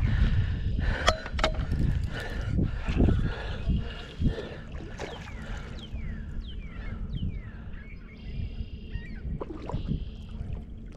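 Wind rumbling on the microphone over water splashing and sloshing at the shoreline, loudest in the first half with a few sharp knocks. A few short falling chirps come about halfway through.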